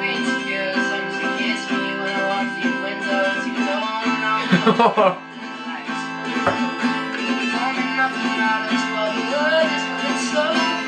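An acoustic guitar, capoed, strummed in steady chords, with a teenage boy's voice singing over it. About halfway through, a person laughs briefly over the music.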